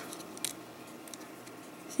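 Small plastic action figure and its display-stand parts being handled: faint light clicks and rubbing, with one sharper click about half a second in.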